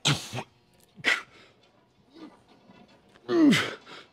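A man's forceful exhales as he strains through reps of cable chest flies, then a loud grunt that falls in pitch near the end.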